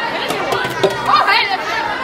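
Overlapping chatter of a small group of people, with a couple of sharp clicks a little under a second in.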